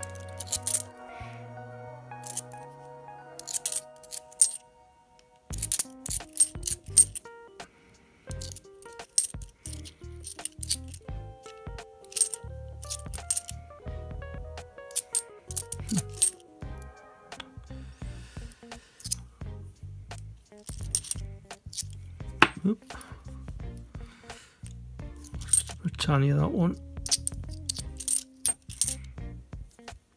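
British 50p coins clinking against each other in short irregular clicks as a stack is fanned through by hand, over background music.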